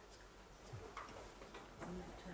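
Quiet room tone with a few faint, scattered clicks.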